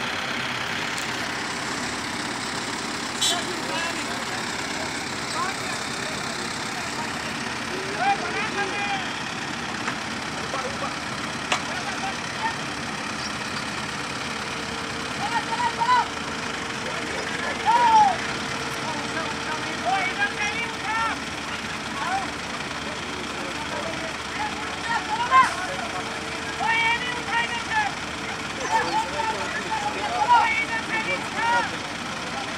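Diesel engines of two F15 Hydra pick-and-carry hydraulic cranes running steadily under lifting work, with a steady whine added from about halfway until near the end. Men's voices call out at intervals in the second half.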